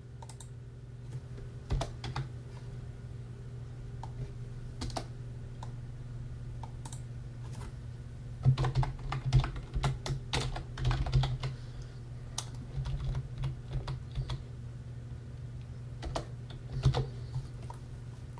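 Typing on a computer keyboard: a few scattered key clicks at first, then a run of quick keystrokes from about halfway through, over a steady low hum.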